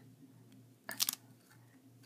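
A short crinkle of a plastic candy wrapper being handled, about a second in, against a quiet room.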